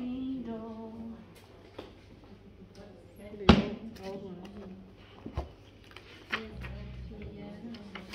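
Faint voices and humming in a small room, broken by one sharp, loud knock about three and a half seconds in and a couple of lighter clicks later.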